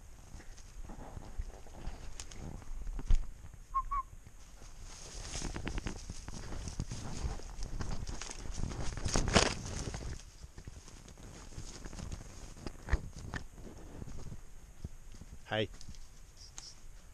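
Footsteps and brushing through forest undergrowth and leaf litter as a person and a dog move downhill on foot. There is a sharp knock about three seconds in and a denser stretch of rustling between about five and ten seconds.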